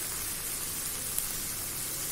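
Onion-tomato masala paste sizzling steadily in hot olive oil in a wok, with one small tick about halfway through.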